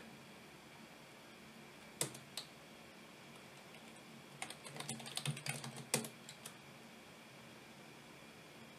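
Faint computer keyboard typing: one sharp key press about two seconds in as the command is entered, then a quick run of keystrokes from about four and a half to six and a half seconds as a password is typed, with a harder press near the end of the run.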